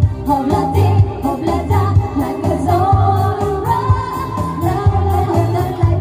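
Live band music: a woman's amplified voice singing a melody over electronic keyboard accompaniment with a steady beat and a pulsing bass line.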